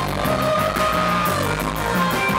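Surf rock band playing: a bass guitar line and drum kit keeping a steady beat, with a long held lead melody that bends slightly in pitch.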